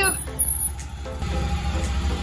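Steady low rumble of a truck engine running close by, with a thin high whistle lasting under a second near the start.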